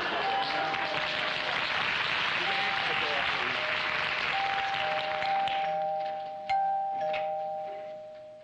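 Studio audience laughter fading out while a two-tone door chime rings ding-dong, high note then low, about three times, the last pair held and ringing on. A few light clicks come near the end.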